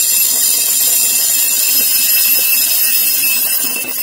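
A shower of small pearl beads falling onto glass dishes, making a loud, steady, dense high hiss of countless tiny clicks.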